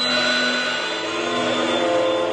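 Steady rushing noise under several long held tones of a dramatic film score.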